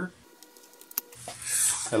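Light ticks and one sharp click about halfway through, from a folding rule being moved and set down on a sheet of galvanized steel, between stretches of a man's voice.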